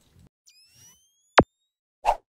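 Channel-ident sound effects: a faint rising whoosh of several tones about half a second in, then a single sharp pop just under a second and a half in, the loudest sound here.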